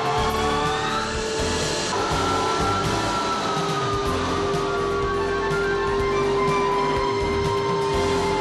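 Background music with sustained held tones and one line whose pitch slowly slides downward, plus a brief swell of noise about a second in.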